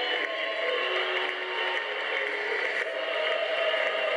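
A theatre audience applauding and cheering steadily for the cast's curtain call, with music of held notes playing underneath.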